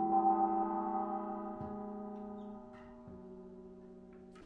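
Small gong struck once with a mallet, its cluster of overtones ringing on and slowly dying away.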